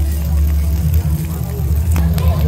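A steady low mechanical rumble, the loudest sound throughout.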